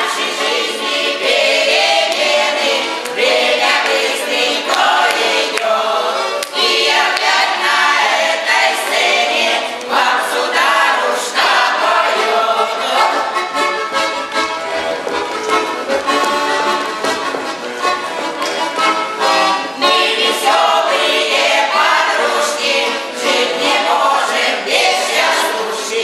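Chastushki, short Russian folk ditties, sung by a mixed group of women's and men's voices to garmon (Russian button accordion) accompaniment.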